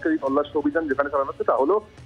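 Speech only: a man talking in Bengali.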